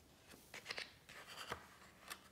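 Fingers handling the glossy page of a large hardcover book as the page edge is gripped and lifted. The paper gives a few faint short rustles and crinkles, the sharpest about a second and a half in.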